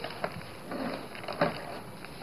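Faint scraping and rustling of a small spatula spreading glue over paper card, with a light tap about one and a half seconds in.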